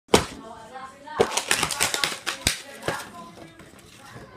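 Polystyrene foam takeaway box being handled and its lid pulled open: a sharp snap at the start, then a quick run of squeaky crackles and clicks, and one more click near the end.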